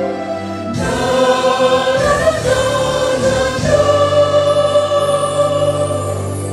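A choir singing, holding long sustained notes; the sound shifts abruptly about a second in, and a long note is held through the second half.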